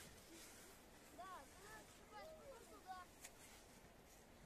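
Near silence with faint, distant voices calling a few short syllables through the middle.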